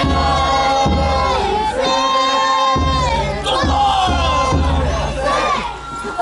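A crowd of danjiri rope-pullers shouting and chanting together, with festival drumming and bells played alongside.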